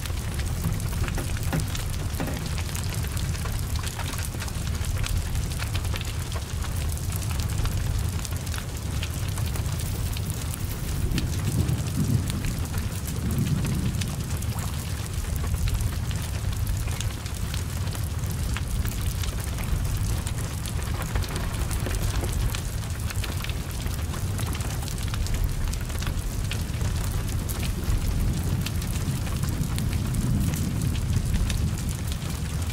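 Heavy rain falling steadily on a burning car: an even hiss of rain with a low rumble from the flames and scattered crackles throughout.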